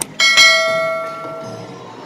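A bell struck just after the start, ringing with several steady tones that fade away over about a second and a half.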